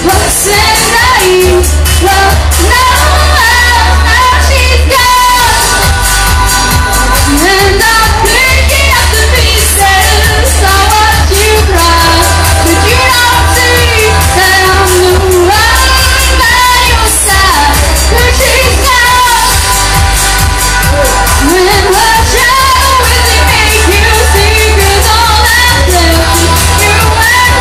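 A woman singing into a microphone with a live band behind her, loud throughout, with heavy bass under a steady beat.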